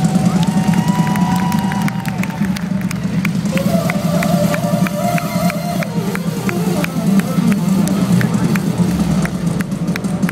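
Concert crowd cheering and clapping, with long held keyboard-synthesizer notes sounding over it in two stretches, the pitch bending slightly.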